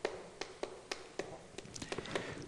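Chalk on a chalkboard while characters are written: a dozen or so faint, irregular ticks and taps as each stroke lands, coming faster near the end.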